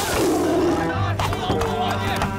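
A big-cat roar from a monstrous tiger, starting suddenly and dropping in pitch through the first second, over music and shouting.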